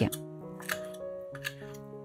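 Chef's knife cutting salted herring on a wooden chopping board: two sharp cuts under a second apart, over soft background music.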